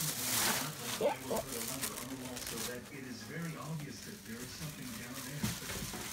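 Thin plastic grocery bags rustling and crinkling as a dog noses through them. The crinkling is strongest at the start and again about a second in, with a voice murmuring in the background.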